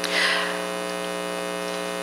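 Steady electrical mains hum, a buzzing tone with many even overtones, with a brief soft hiss just after the start.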